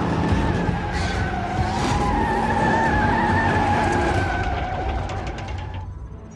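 Car tires spinning in place on pavement, a steady, slightly wavering squeal over engine noise, easing off near the end.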